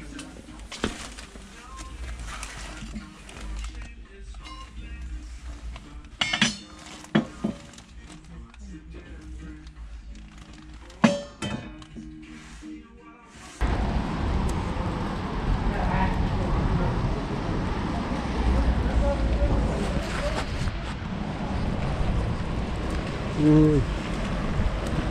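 Background music playing in a shop, with sharp clinks of metal saucepans being handled, one loud clink about eleven seconds in. Just past halfway the sound cuts to a loud, steady rush of wind on the microphone outdoors.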